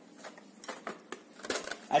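Plastic wrapper of a pack of drinking straws crinkling as it is handled, a few light scattered crackles with a slightly louder burst of rustling about one and a half seconds in.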